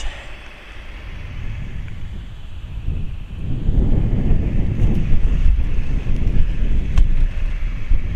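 Wind buffeting the camera microphone: a loud, uneven low rumble that grows stronger about three seconds in.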